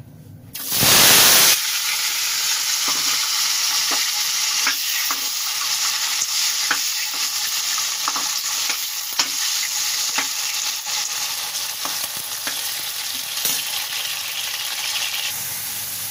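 Cubed potatoes tipped into hot ghee in a metal kadhai: a loud burst of sizzling about a second in, settling into a steady frying sizzle for the rest. Light ticks of a metal spatula stirring the potatoes against the pan come through the sizzle every second or so.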